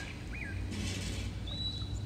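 Birds chirping: a short chirp about a third of a second in, then a thin, steady whistle near the end, over a low rumble.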